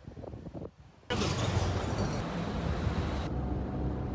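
Steady engine and road noise heard from inside a moving taxi's cabin, starting abruptly about a second in after faint street sound. A brief high tone sounds about two seconds in.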